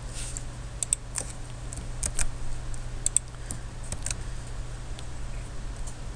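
Irregular clicks from a computer keyboard and mouse as cells are selected and copied with keyboard shortcuts, over a steady low hum.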